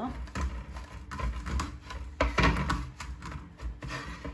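Dry shredded kataifi dough rustling and crackling under the hands as it is pressed and gathered into a round on a plate, in a run of irregular crisp crackles.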